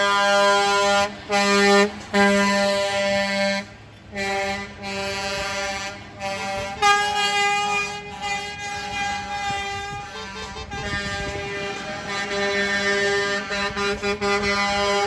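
Air horns of passing tow trucks honking in long, repeated blasts, several horns of different pitch sounding over one another, with a short break a little under four seconds in.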